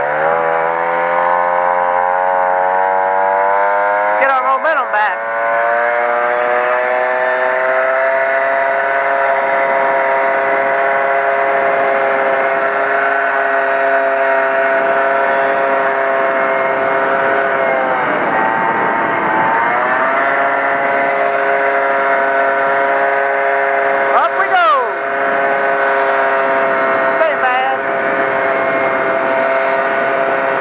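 Honda PA50 Hobbit moped's 49 cc two-stroke single-cylinder engine pulling away, its note rising steadily over the first several seconds, then running at a steady pitch. A little past halfway the note dips briefly and comes back up.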